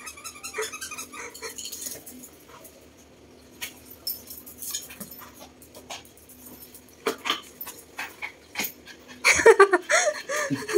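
Small chorkie dog playing with a pink canvas squeaky tug toy on a tile floor: short high squeals in the first couple of seconds, then scattered clicks and knocks from claws and the toy on the tiles. A loud vocal burst comes near the end.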